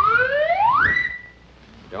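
A slide whistle blown in one rising glide that climbs for about a second, holds its top note briefly and stops: a comic sound effect for a spaceman flying off.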